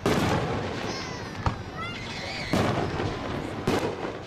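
Fireworks going off: a loud burst at the start, a sharp crack about a second and a half in, and two more bursts in the second half, with short whistles in between.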